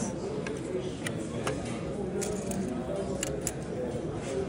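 Scattered light clicks and ticks as pieces of jewelry and a benchtop gold-testing analyzer are handled, over a low murmur of background voices.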